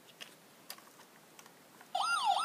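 Faint, scattered light clicks and taps, three or four in all, from plastic toys being handled on carpet.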